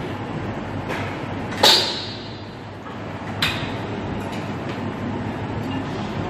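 Metal clanks from a plate-loaded press machine with iron weight plates as a lifter works it: a loud ringing clank about one and a half seconds in, a second sharp clank about halfway, and a few lighter clicks, over a steady low hum.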